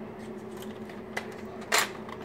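A Nerf Strongarm blaster being handled: a faint click a little over a second in, then one short, sharp burst of noise near the end, over a steady low hum.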